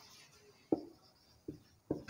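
Marker writing on a whiteboard: three short, sharp strokes as letters are put down, about a second in, halfway through and near the end, with faint rubbing between them.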